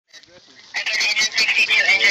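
Dispatcher's voice from a police and fire scanner stream, coming thin and tinny through a phone speaker. It cuts in about three quarters of a second in, after a faint start.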